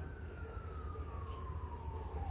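Faint siren wail: one high tone falling slowly in pitch, over a low steady hum.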